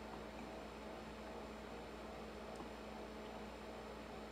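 Quiet room tone: a steady low electrical hum under a faint hiss, with one faint tick a little past halfway.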